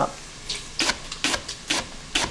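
Kitchen knife slicing through leek onto a wooden cutting board: a run of short, crisp cuts, about two a second.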